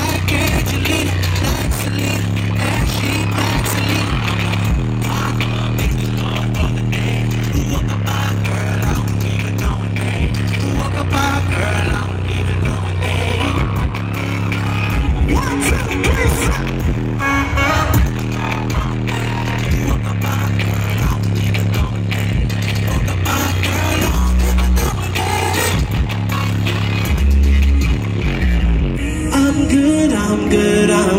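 Live R&B concert music played loud through an arena PA, with a deep, steady bass line under an even beat and a man singing over it.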